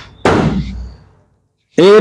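A man's voice: a sudden loud syllable about a quarter second in that tails off, then a brief dead silence at an edit, and loud male speech starting just before the end.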